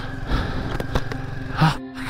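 Background music over a motorcycle engine running with wind noise, the Royal Enfield Himalayan 450's single-cylinder engine. A brief vocal sound comes near the end.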